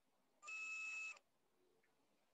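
A single electronic beep: one steady, high tone lasting under a second, starting about half a second in.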